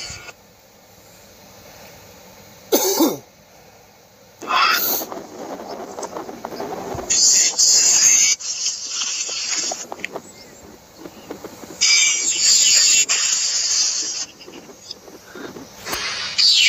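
Noisy, crackly recording of a dark room with short breathy, cough-like sounds and spells of loud high hiss, which the captions present as spirit voices saying 'Hey', 'Hun it's vee' and 'Strangle'.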